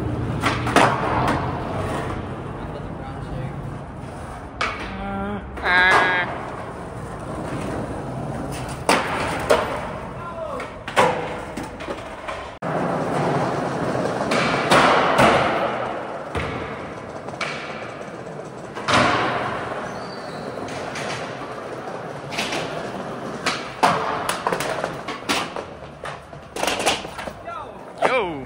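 Skateboard wheels rolling over concrete and smooth tile, broken by repeated sharp clacks and thuds of the board popping, landing and slapping down.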